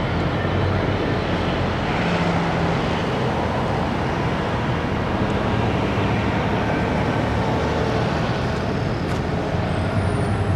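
Steady road traffic noise with a low engine hum from vehicles on the surrounding streets.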